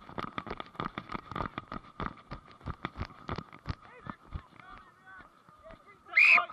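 Rapid, irregular knocks and thuds from a referee running on grass with a body-worn camera: his footfalls and the camera jolting. They thin out after about four seconds, with faint distant shouts near the end.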